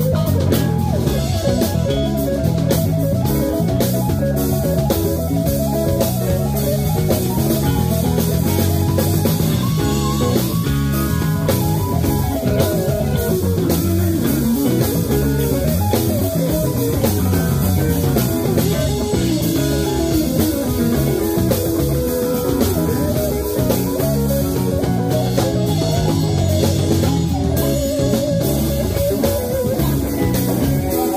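Live band playing an instrumental jam, led by electric guitar over a drum kit.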